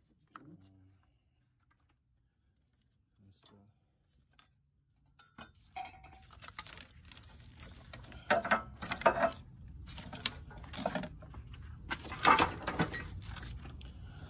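Hand tools and metal engine parts clinking and clanking, with a handful of sharp metallic clanks in the second half. The first few seconds are near silence.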